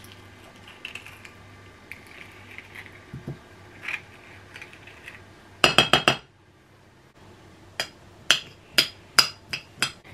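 A metal spoon clinking and scraping against a small ceramic bowl as avocado is scooped from its skin and mashed. There are soft scrapes at first, a cluster of loud clinks about six seconds in, then a run of sharp clinks about half a second apart near the end.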